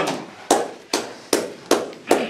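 A run of five sharp strikes, about two a second, each dying away quickly.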